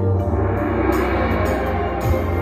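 Marching band music: a gong or tam-tam swell shimmers up from the front ensemble over a low sustained chord from the band.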